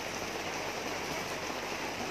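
Steady rain falling, heard from under a tarp canopy.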